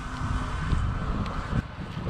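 Uneven low rumble of wind buffeting the camera's microphone outdoors.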